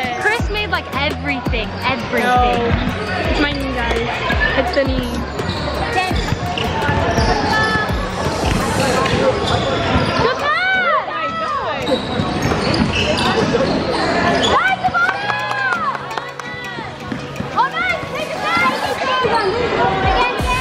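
Basketball game in a gym: a ball bouncing on the hardwood court in repeated sharp thuds, with players' voices calling out over it.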